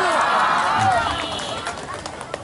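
Many voices from an audience shouting and cheering at once, strongest in the first second and then dying down.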